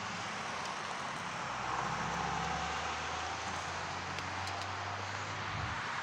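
Road vehicle running past: a steady low engine hum under a haze of road noise that swells about two seconds in, the hum dropping away shortly before the end.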